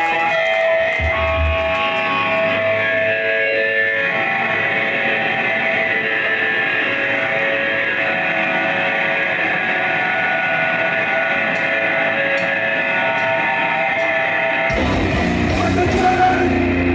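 Live punk band: electric guitars playing held, ringing notes with little drumming or bass, then the full band with drums and bass comes in about a second before the end.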